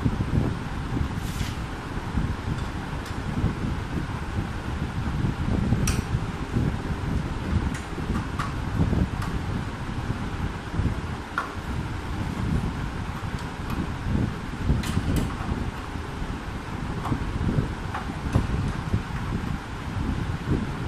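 Steady low rumbling background noise, with a few sharp light clicks scattered through it as a screwdriver works on the metal burner fittings of a gas hob.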